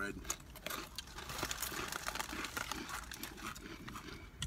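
Crinkling of Doritos Dinamita snack bags as hands dig into them, with scattered sharp crackles of the rolled tortilla chips being handled and eaten.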